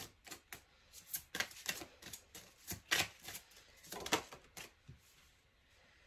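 A deck of tarot cards handled and shuffled by hand: a quick, irregular run of light clicks and flicks that stops about five seconds in.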